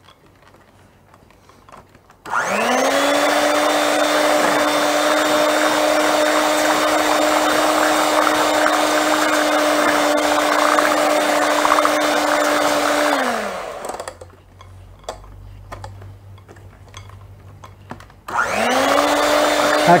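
Electric hand mixer beating cake batter in a glass bowl. It starts about two seconds in with a rising whine, runs steadily for about eleven seconds and winds down, then starts up again near the end.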